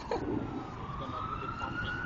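A siren wailing, its pitch sliding down and then back up in one slow sweep.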